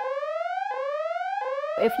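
Electronic alarm-style sound effect: a buzzy synthetic tone that rises in pitch, drops back and rises again about every two-thirds of a second, cutting off sharply near the end.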